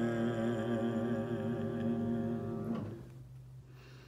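A man's bass voice holding a long final note of a choral piece with a slight vibrato, cut off about three seconds in. A faint low steady tone lingers after it.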